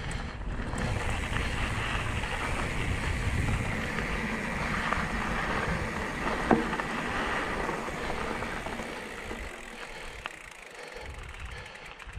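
Mountain bike rolling along a dirt singletrack: steady tyre and drivetrain noise with wind buffeting the microphone, and one sharp click about halfway through. The sound eases off a little near the end.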